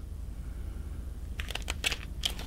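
Paper pages of a booklet being flipped, a quick run of crisp rustles about a second and a half in, over a low steady hum.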